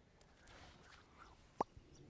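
Near silence, with one short, sharp click about one and a half seconds in.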